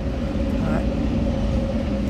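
A running motor: a steady low rumble with a constant mid-pitched hum.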